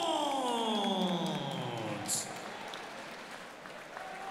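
A ring announcer's long, drawn-out call of the winner's name over the PA, falling in pitch for about two seconds, with crowd applause and cheering underneath that carries on after the voice fades.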